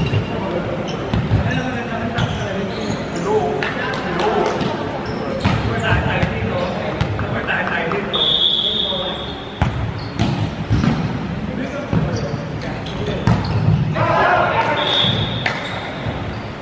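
Indoor volleyball play in a reverberant sports hall: a series of sharp smacks of the ball being hit and landing on the wooden court, with players talking and calling out. A high shrill note sounds for over a second about eight seconds in and again briefly near the end.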